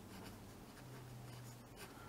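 Faint scratching of a coloured pencil writing on paper, with a faint low hum for about a second in the middle.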